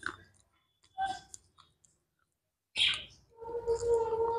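Close-miked mouth sounds of chewing a white chocolate KitKat wafer: short wet clicks and crunches in separate bursts about a second apart. A held, pitched hum-like tone joins in near the end.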